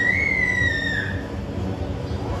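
A giant panda cub giving one high-pitched squeal while its mother grabs and holds it. The call rises and then holds its pitch for about a second before it stops.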